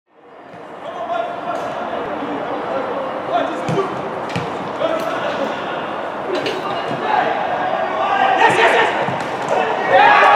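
Football match sound: players calling out to each other across the pitch, with the ball being kicked several times in sharp thuds. The sound fades in over the first second.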